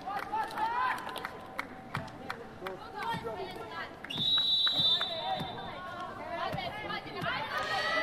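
Volleyball arena crowd noise, with voices and scattered sharp claps. A referee's whistle is blown once about four seconds in, a single steady high note held for about a second and a half.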